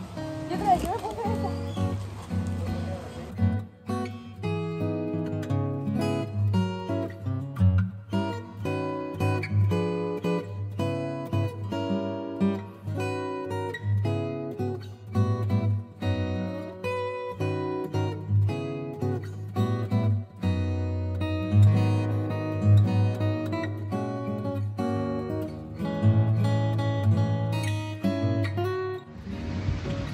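Background music led by plucked acoustic guitar, with a steady beat, coming in about three and a half seconds in.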